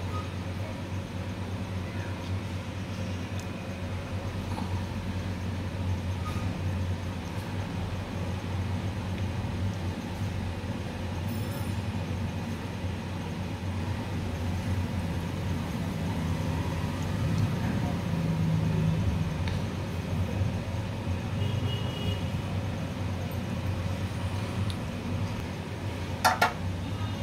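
A steady low background hum, swelling a little about two-thirds of the way through.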